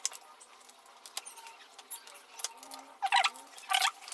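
Small sharp clicks and light plastic-and-metal handling noise from laptop parts being worked loose by hand during disassembly, with two louder, brief scraping rustles near the end.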